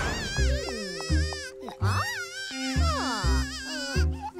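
Cartoon baby's high, wavering crying wail over background music with a low pulsing beat.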